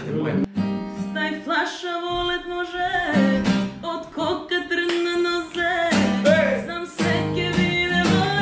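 Steel-string acoustic guitar strummed live, accompanying a woman singing a melody.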